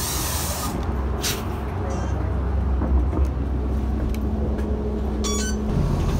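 Wind hissing on the microphone briefly, then, after a cut, the inside of a moving city bus: a steady low engine rumble with a held hum, scattered clicks and rattles, and a short electronic beep near the end.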